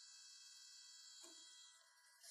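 Polaroid ZIP mobile printer feeding a Zink photo print out: a faint, steady high-pitched whine made of several tones, easing off near the end. A soft knock about a second in.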